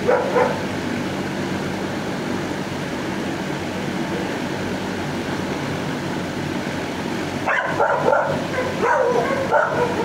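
Dog barking and yelping in shelter kennels over a steady low hum: a short bark right at the start, then a run of barks and yelps from about seven and a half seconds in.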